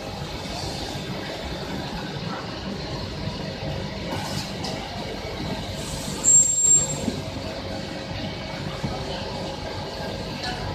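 Steady factory machinery noise around a high-frequency PVC welding machine, with short hisses of compressed air from its pneumatic cylinders a little after four and near six seconds. The loudest of these is a brief burst about six seconds in that carries a thin high whistle.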